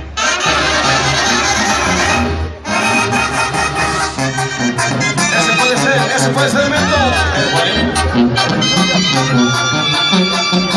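Mexican brass band (banda) music playing, with trumpets and trombones, briefly dipping near the start and again after about two and a half seconds.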